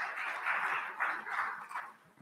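Audience applauding, fading out near the end.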